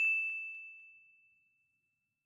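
A single bell-like notification ding, the kind of sound effect that goes with a subscribe-button prompt. It is one high, clear tone struck once, and it rings out and fades away over about a second and a half.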